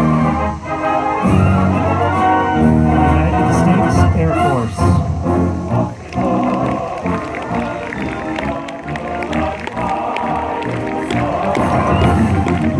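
Military concert band playing a march, with full brass chords and heavy low tuba notes and a sliding descending figure. About halfway through, audience cheering and clapping mix in over the band as it plays on.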